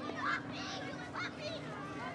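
Children's voices: high shouts and calls overlapping as a group of kids run and play.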